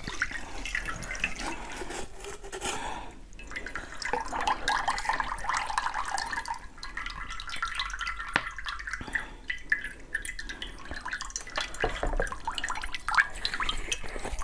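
Passion fruit pulp pouring and dripping wetly from a plastic bottle onto a frozen block, mixed with small clicks from handling.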